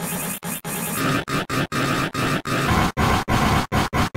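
Harsh, distorted logo sound effects run through stacked audio effects, cut into short pieces by brief silent gaps about three to four times a second. The sound shifts in character twice along the way.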